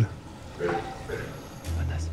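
A short spoken 'ouais' about half a second in, over faint background music whose low bass line drops out and comes back near the end.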